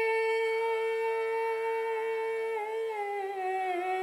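Opening song of a video: a voice holding one long sung note that steps down in pitch about three seconds in.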